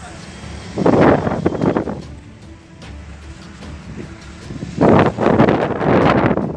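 Roadside outdoor sound: two loud rushes of noise, each about a second long and about four seconds apart, from wind buffeting the microphone over traffic, with a quieter steady background between them.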